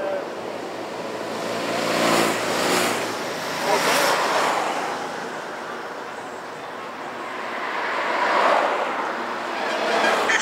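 Race convoy cars passing one after another close by, each pass-by swelling and fading, with an engine note strongest about two seconds in and further passes near four and eight seconds.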